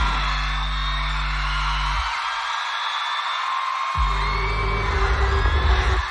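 Live concert music with no singing: a deep bass note held for about two seconds, a two-second break, then the bass returns and pulses near the end, with the crowd screaming and whooping throughout.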